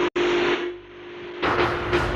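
Movie-trailer sound design: a rush of hissing noise over a steady droning tone, dipping about a second in and swelling again with deep rumbling hits near the end.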